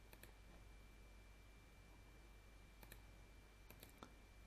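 Faint computer mouse clicks in quick pairs, a few times, over near-silent room tone.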